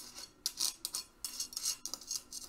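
Sharp knife blade drawn back and forth across a mail (chainmail) sleeve, several short metallic scraping strokes of steel on the linked metal rings. The blade slides over the rings without cutting through: the mail stops the edge.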